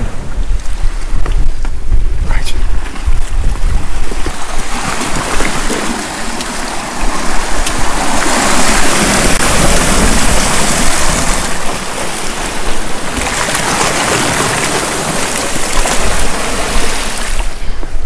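Sea waves surging and washing through a rocky gully, swelling in two long washes. Wind rumbles on the microphone, strongest in the first few seconds.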